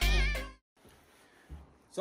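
Background music cuts off abruptly about half a second in, its last note a wavering, warbling pitched tone; then near-quiet background hiss with one soft thump.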